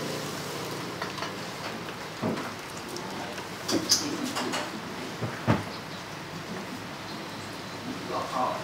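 Large steel pot of water at a rolling boil, a steady hiss and bubbling, with a few sharp knocks in the middle.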